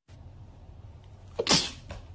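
A corgi sneezing once, a short sharp burst about one and a half seconds in, over a low steady background hum.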